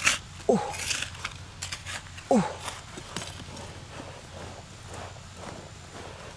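Hand trowel digging and scraping into dry, stony soil, with a few sharp scrapes in the first three seconds and quieter scuffing of dirt after. A man's voice lets out a soft falling "ooh" twice.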